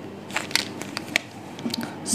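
A handful of short, sharp clicks and scrapes from a dry-erase marker being handled and put to a whiteboard.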